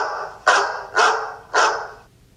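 A dog barking four times in quick succession, about half a second apart.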